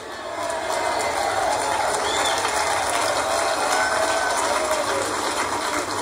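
A congregation applauding steadily, a dense crackle of many hands clapping, heard through a screen's speaker as it plays back.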